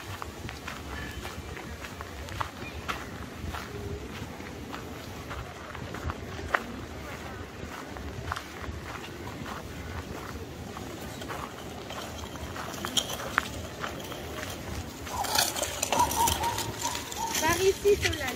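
Outdoor park ambience: passersby talking and footsteps on a gravel path, with scattered light clicks. Nearby voices grow louder about three seconds before the end.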